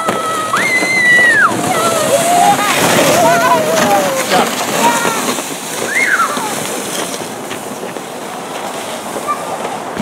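Sleds sliding down a packed snow run with a rough scraping hiss, under high-pitched shouts and squeals: one long held call about a second in and a short rising squeal about six seconds in. The hiss fades toward the end.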